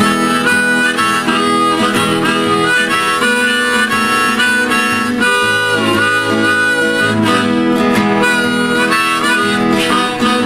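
Harmonica in a neck holder playing a blues tune over acoustic guitar accompaniment, with one note bent down and back up about halfway through.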